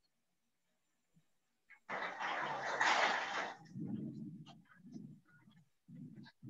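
Background noise picked up by a participant's open microphone on a video call: a rushing burst of noise that lasts a bit under two seconds, starting about two seconds in, then muffled low sounds in short bursts.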